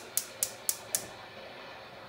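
Gas stove burner igniter clicking rapidly, about four sharp ticks a second, stopping about a second in as the burner is lit under the pasta pot.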